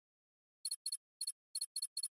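High-pitched electronic chirping sound effect: six quick double pips in about a second and a half, starting just over half a second in.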